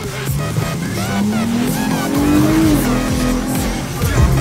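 Electronic dance music over a car engine accelerating: the engine's pitch rises for about two seconds, then drops back.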